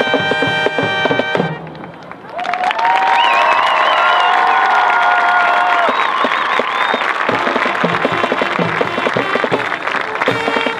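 Marching band brass holding a final chord that cuts off about a second and a half in. Then the stadium crowd applauds and cheers, with high whoops and whistles. From about seven seconds in, a drum cadence starts under the applause.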